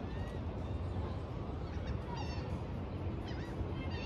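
Birds calling a few times, in short pitched calls, over a steady low outdoor rumble.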